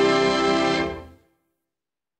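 Orchestral end-title music holding a final chord, which fades away a little over a second in.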